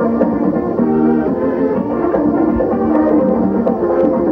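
Live calypso band playing an instrumental passage between vocal lines: a horn section plays a repeating riff over steady percussion.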